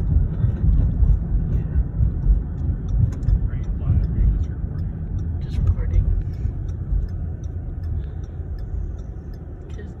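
Car interior road noise while driving: a steady low rumble of tyres and engine. It fades gradually near the end as the car slows behind traffic.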